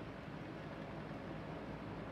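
Quiet room tone: a steady, low background hiss with no distinct event.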